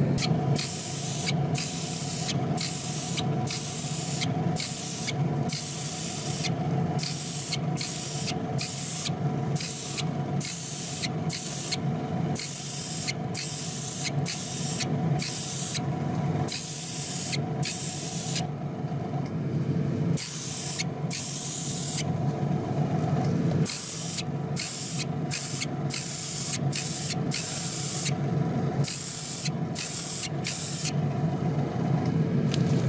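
Small gravity-feed spray gun spraying paint in short hissing bursts, triggered on and off roughly twice a second, with a pause of a second or two about two-thirds of the way through. A steady machine hum runs underneath.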